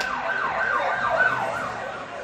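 Siren-like sound effect in a band's opening jingle: a pitch that sweeps down over and over, about three times a second, fading out near the end.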